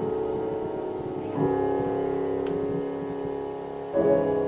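Grand piano played solo in a live recital: a held chord dies away, a new full chord is struck about a second and a half in and left ringing, and another chord is struck right at the end.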